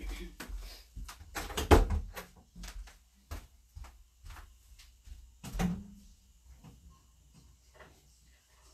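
Knocks and clatters of household things being moved about while someone rummages for a hair dryer, loudest about two seconds in and again a little past the middle.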